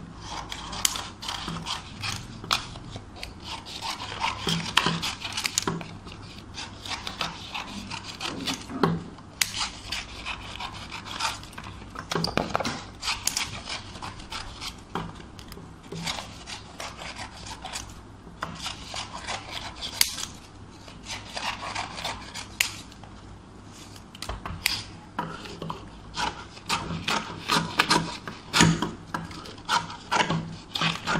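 Small scissors snipping paper into pieces over and over, at an irregular pace, with paper rustling and rubbing between the cuts.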